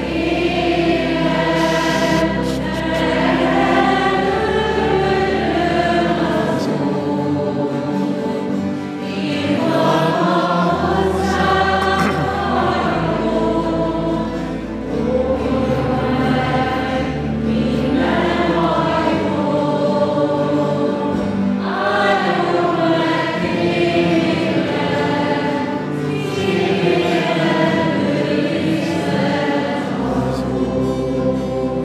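A small group of voices singing a slow church hymn to acoustic guitar accompaniment, over long held bass notes that change every few seconds.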